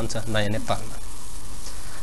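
A man's voice finishes a phrase in the first moment, then a pause filled only by a steady hiss with a low electrical hum under it, the noise floor of the studio recording.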